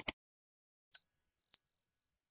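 Subscribe-button sound effects: a quick double mouse click, then about a second in a high notification-bell ding that rings on with a wavering, slowly fading tone.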